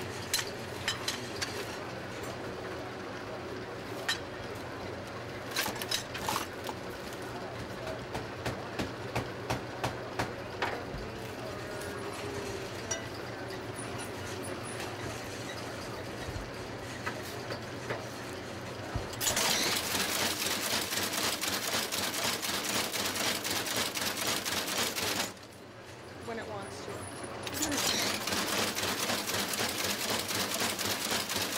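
A corn-broom stitching machine at work. A steady low hum with scattered clicks and knocks gives way, about two-thirds through, to a loud rapid clatter as its two needles swing back and forth pulling the twine through the broom. The clatter stops briefly and starts again near the end.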